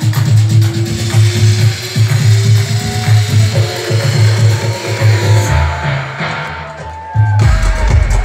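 Loud techno played over a club sound system: a steady heavy kick drum about twice a second under a slowly rising synth tone. About five and a half seconds in, the kick drops out and the highs are cut away for a short build-up. Near the end, the drop lands with heavy bass and the kick coming back in.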